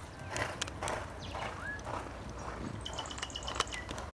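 Faint, irregular thuds of a racehorse's hooves galloping on the track, over a low background rumble. A short rising whistle comes about a third of the way in, and a quick run of high chirps near the end.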